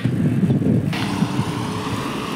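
Road traffic going by close by: engine sound first, then a steady hiss of tyre and road noise from about a second in.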